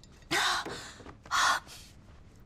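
A young woman's heavy gasping breaths, two of them about a second apart: she is out of breath from running.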